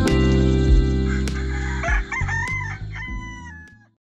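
Background music with a steady low drone, fading out at the end. A rooster crows once about halfway through, over the music.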